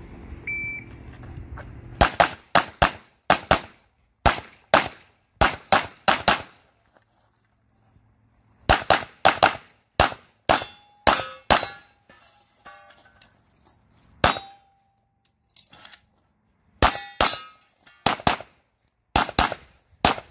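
Glock 34 Gen5 9mm pistol fired rapidly, mostly in quick pairs of shots, in several strings with pauses between them as the shooter moves between positions; a few shots leave a brief ringing after them.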